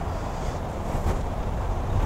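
Wind buffeting the camera's microphone: a steady low rumble with a faint hiss above it.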